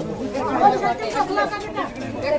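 Several people talking at once over one another: crowd chatter.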